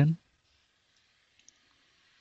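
Near silence with a faint steady hiss, and a single faint click about one and a half seconds in.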